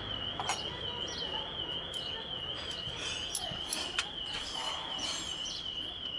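A steady high-pitched warbling tone that wavers about five times a second, with a few light clicks from hands working on the throttle body's intake hose.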